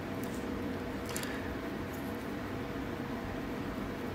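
Steady low background hum with a few faint clicks as a steel pick blank is slid into its wooden handle for a test fit.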